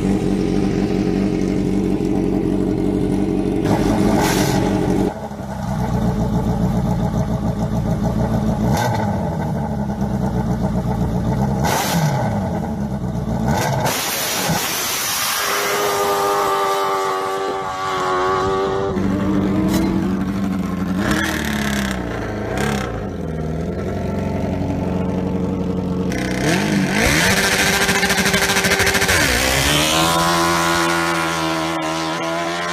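Combustion engines running and revving, one after another with sudden changes between them. The pitch rises and falls with the throttle.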